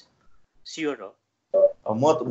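Speech only: a man's voice in short fragments with pauses between them.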